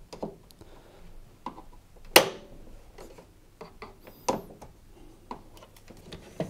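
Plastic tabs of a tumble dryer's control panel clicking and snapping as a flat-headed screwdriver pushes them down and the panel works loose, a string of about six sharp clicks and knocks, the loudest about two seconds in.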